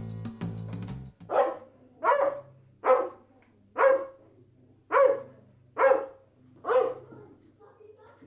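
A dog barking seven times, about one bark a second, starting just after music cuts off about a second in.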